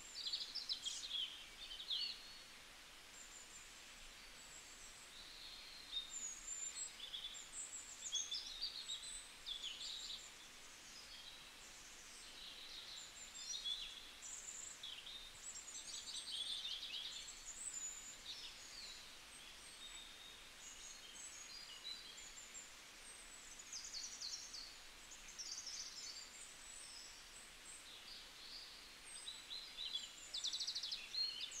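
Faint chirping and twittering of small birds, a continual run of short calls and quick trills over a steady low hiss.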